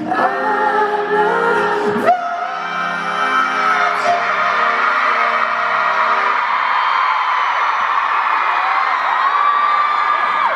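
Live pop concert heard from within an arena crowd: a male singer holds long sung notes over the band's sustained chords, with the crowd screaming and singing along. The music thins out about two-thirds of the way through, leaving the crowd's screaming on top.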